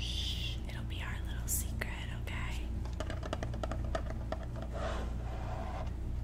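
A woman's soft 'shh' at the start, then whispering, followed in the second half by a quick run of light clicks and taps.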